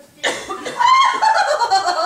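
An actor laughing loudly in a high-pitched voice, starting about a quarter second in.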